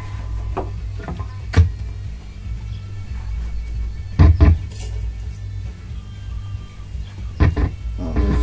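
A steady low hum with a few sharp knocks and clunks over it: one about a second and a half in, a louder cluster around four seconds, and another pair near the end, like instrument gear being handled before playing starts.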